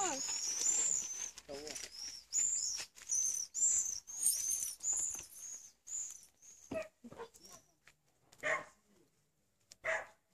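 German Shepherd dog barking a few single times in the second half, after a quick run of repeated short, high-pitched chirps in the first half.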